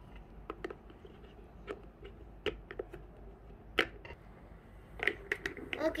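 Hard plastic toy parts clicking and tapping as wheels are pressed onto a toy cart's plastic axle pegs: scattered sharp clicks, the loudest about four seconds in, with a quick run of clicks near the end.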